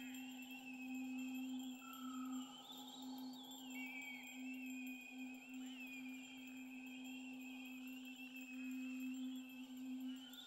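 Quiet ambient electronic music: a steady low drone under a wavering high tone that slowly rises and falls.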